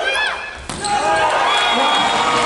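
Indoor volleyball rally on a hard court: shoes squeaking on the floor, then a sharp smack of the ball about two-thirds of a second in, followed by loud crowd noise and voices in a large hall.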